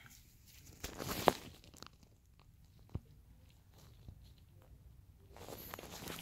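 Faint handling noises: a short rustle about a second in that ends in a click, and a single sharp click near three seconds, otherwise quiet.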